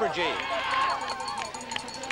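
Downhill racing skis hissing over hard-packed snow at speed, a brief hiss in the first second followed by fainter scraping and ticks.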